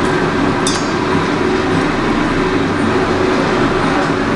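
Steady background rumble with a low hum, and one light metallic clink a little under a second in as green chillies are placed on fish in a stainless steel bowl.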